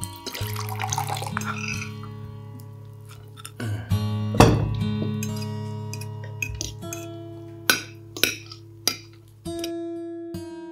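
Background music of plucked and strummed acoustic guitar over held low notes, with regular plucked strikes. In the first two seconds, water is poured from a glass jug into a glass.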